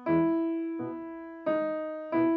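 Grand piano playing slow chords, one every 0.7 s or so, each with one loud held note ringing over short, soft notes in the other voices. This is a voicing exercise: melody forte, the other voices pianissimo and staccato.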